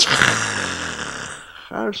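A man's drawn-out, strained, hissing breath-sound with a faint voiced groan beneath it, fading over about a second and a half, acting out a stomach seizing up at upsetting news. Speech resumes near the end.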